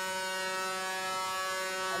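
Big-rig truck air horn sounding one long, steady blast.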